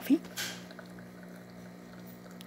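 De'Longhi La Specialista espresso machine's pump humming steadily while it brews an espresso shot, with a brief hiss about half a second in.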